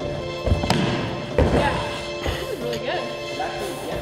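Music plays throughout. Over it, a freerunner's run-up and landing against foam crash mats on a sprung gym floor give three heavy thuds within the first second and a half.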